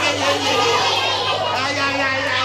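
Children shouting and chanting together with a man leading them, many excited voices overlapping.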